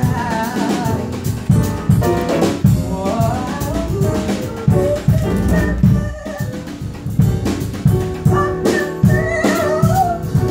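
Male vocalist singing into a handheld microphone over music with a steady drum beat, in phrases, with a short break in the voice a little past the middle.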